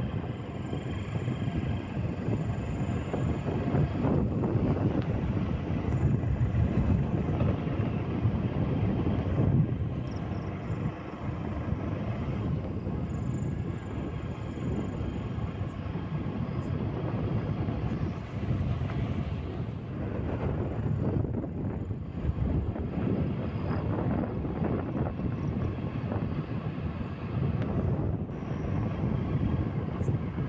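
Steady low rumble of a vehicle moving along a road, heard from on board.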